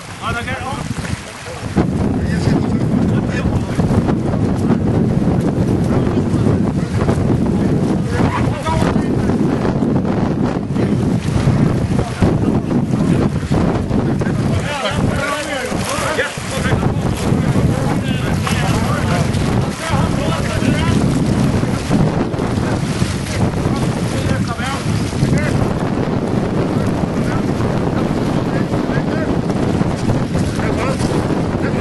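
Wind buffeting the microphone, a loud, steady low rumble that sets in about two seconds in, with faint distant voices now and then.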